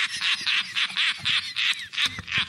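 A rapid run of short, quack-like squawks, about five a second.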